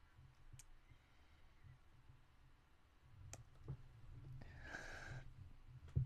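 Faint wet mouth clicks and lip smacks from licking a hard candy cane, mostly very quiet. About four and a half seconds in there is a short breathy exhale.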